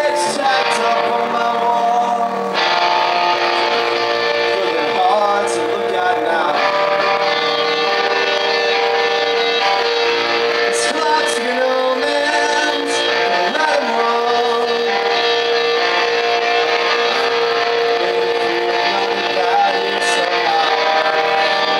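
Live punk rock band playing loud: electric guitar with a male voice singing over it.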